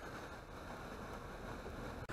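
Faint, steady rush of wind and water at a pond with fountains spraying, with no distinct splash or other event.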